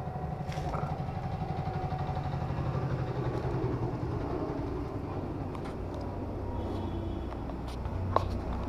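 Yamaha MT-15's single-cylinder engine idling steadily, with an even pulsing beat.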